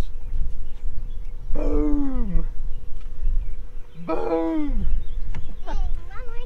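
Two drawn-out wordless vocal cries from a person on the boat, each about a second long and falling in pitch, the second near the middle of the clip, over a steady low wind rumble on the microphone.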